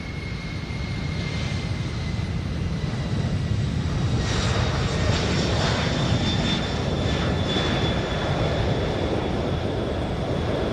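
Lockheed C-5 Galaxy's four turbofan engines at takeoff thrust: a steady low jet rumble with a high whine, growing louder and hissier about four seconds in.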